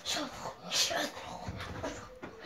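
A child's short whimpering, yelping vocal sounds, broken up by breathy, rustling noises from scuffling during rough play.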